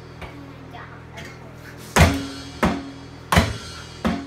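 Electronic drum kit played with sticks: a couple of light hits, then three loud drum strikes in the second half, about two-thirds of a second apart, each ringing out.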